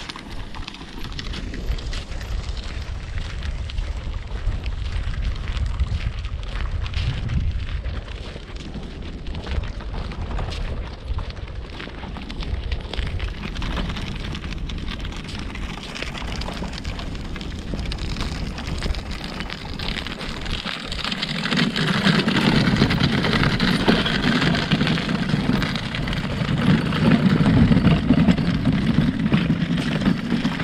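Wind buffeting the microphone as a low rumble. About two-thirds of the way through, a louder rolling noise joins it: a loaded fabric beach wagon being pulled over packed sand.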